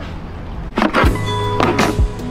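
Background music fades in about halfway through, with steady held tones and a low beat. Two falling sweeps mark its entry.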